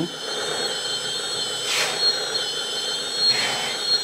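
Electric hydraulic pump of a 1/14 RC hydraulic bulldozer running with a steady high whine while the blade is tilted. Two short hisses come about two and three and a half seconds in.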